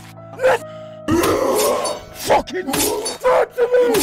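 Drama soundtrack: moody music that stays low for about a second and then swells sharply louder, with a wounded man's voice sounds and sharp hits over it.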